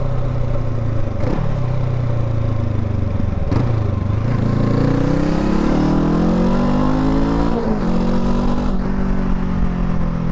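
Honda CL500's 471cc parallel-twin engine pulling the bike along under acceleration. The revs climb steadily, then drop sharply at gear changes about a second, three and a half seconds and seven and a half seconds in.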